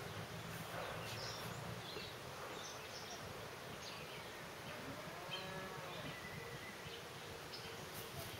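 Insects buzzing steadily, with scattered short high chirps over the buzz.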